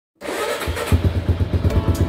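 MotorStar Cafe400 motorcycle engine running with a quick, steady low throb, starting about a fifth of a second in.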